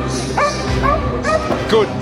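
A border collie–corgi mix barking while running an agility course: several short yipping barks about half a second apart, over background music.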